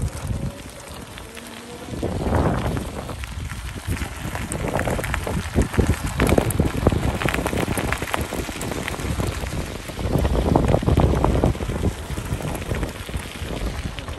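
Bike tyres rolling over a loose gravel track, a continuous crackle of small stones under a low wind rumble on the microphone, louder from about two seconds in.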